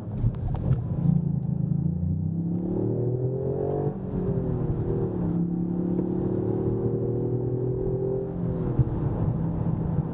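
Toyota GR Yaris's 1.6-litre turbocharged three-cylinder engine heard from inside the cabin, accelerating through the gears of its six-speed manual. The revs climb, drop sharply about four seconds in as it changes up, climb again more slowly, and fall away near the end.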